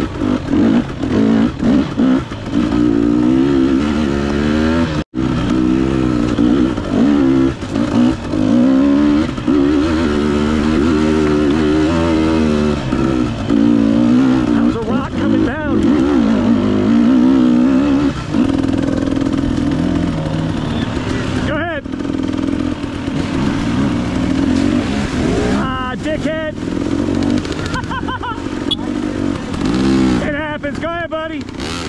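Dirt bike engine running on a trail, its revs rising and falling with the throttle. The sound cuts out for an instant about five seconds in. A second dirt bike's engine is heard close by near the end.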